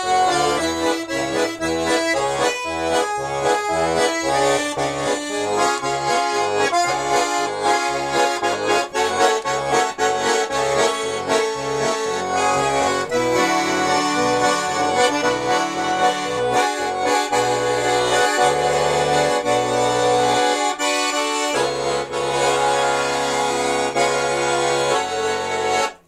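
Russian garmon (button accordion) playing an instrumental passage: a melody over an even alternating bass-and-chord accompaniment, which turns in the last several seconds into long held chords and ends at the close.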